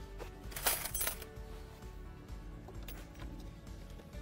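A stainless steel decking clip pushed by hand into the edge groove of a hollow composite deck board: a short metallic scrape about half a second in, and a faint click later. Background music plays throughout.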